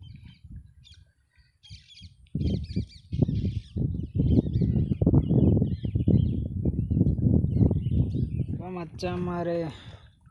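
Small birds chirping in the background, with a loud, dense low rumble on the microphone from about two seconds in. A man speaks briefly near the end.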